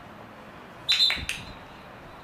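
Referee's whistle, two short blasts close together about a second in.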